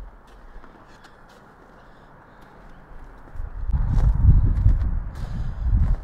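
Footsteps on packed snow, with faint scattered crunches. About three seconds in, a loud, uneven low rumble on the microphone, like wind buffeting, rises and becomes the loudest sound.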